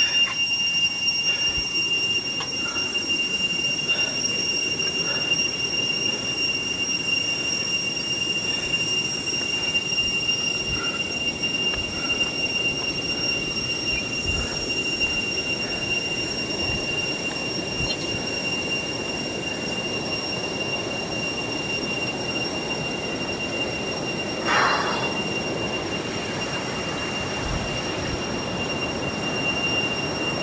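Rushing river water under a steady high-pitched whine of two held tones. A brief louder sound breaks in about 24 seconds in.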